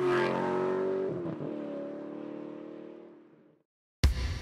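Logo sound effect of a car engine revving: a loud held engine tone that starts abruptly, dips in pitch about a second in, then fades out over the next two and a half seconds.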